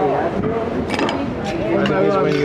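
Voices talking at a meal table, with a couple of sharp clinks of cutlery on plates, about a second in and again half a second later.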